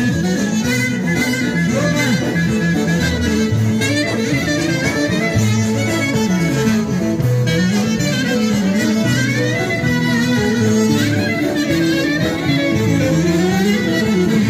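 Greek folk dance music, instrumental: an ornamented, wavering lead melody over a steady accompaniment.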